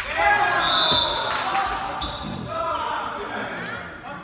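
Indoor volleyball play in a sports hall with a strong echo: players shouting and calling, the ball being struck, and a steady high whistle from about half a second in, lasting about a second.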